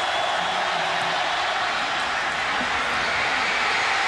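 Large stadium crowd making a steady, dense din of noise during a field-goal attempt.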